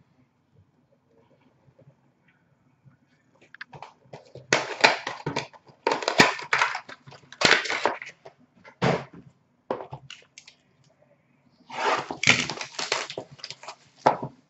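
Card-box packaging being handled and opened: cardboard and plastic wrap crackling and crinkling in bursts, starting about four seconds in and running for several seconds, then again near the end.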